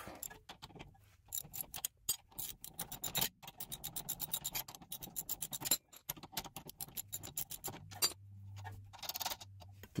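Ratchet wrench clicking in quick runs as a 13 mm brake caliper bolt is backed out, with brief pauses between runs.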